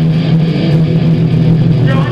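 Live band playing loud through a club PA, led by a distorted electric guitar, with a steady heavy low drone underneath.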